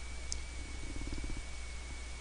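Quiet recording background: a steady low electrical hum with hiss and a thin, faint high whine. A faint low rattling sound comes about halfway through.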